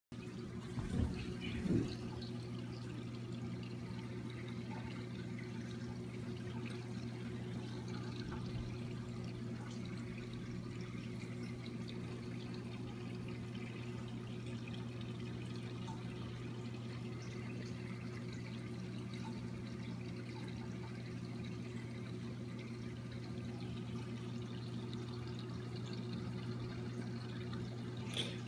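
Steady hum of reef aquarium equipment with water circulating in the tank, unchanging throughout. Two short low bumps sound about a second in.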